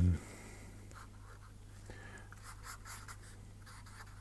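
Marker pen drawing on paper: faint, short scratching strokes, most of them between about one and three and a half seconds in.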